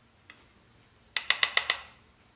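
Metal spoon clinking against a ceramic bowl as sauce is stirred: one light click, then about six quick ringing clinks in under a second.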